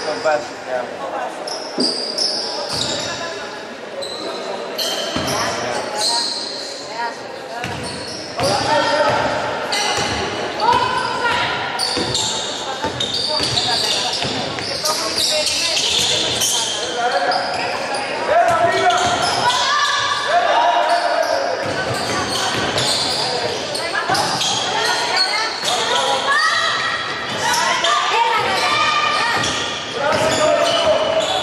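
A basketball being dribbled and bounced on a wooden court, the impacts echoing around a large gym, with players' and coaches' voices calling out over the play.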